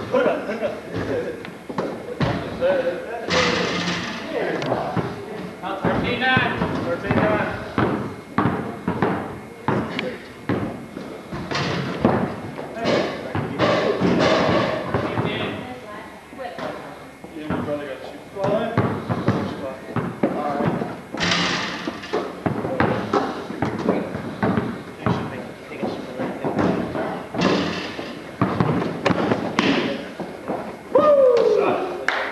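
A basketball game in a gym: the ball bouncing on the court and thudding off hands, rim or floor in repeated irregular impacts, with players' indistinct voices and calls mixed in.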